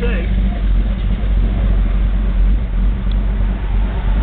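Modified 454 big-block V8 of a 1970 Chevrolet Chevelle idling loudly and steadily, a deep even rumble heard from inside the car.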